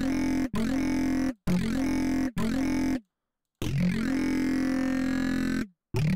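Heavily distorted synth saw-wave bass from Bitwig's Polymer, run through Bitwig's Amp device, played as a string of held notes. Each note starts with a quick upward pitch swoop and has a buzzing, ringing tone, and there is a half-second break near the middle. The amp model is switched between notes, from a wave-folding mode to Class A.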